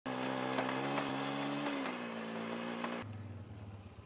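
Four-wheeler ATV engine running as the quad drives in, its pitch easing down a little midway, with a few sharp ticks. About three seconds in the sound cuts to the same ATV idling quieter and lower with an even throb.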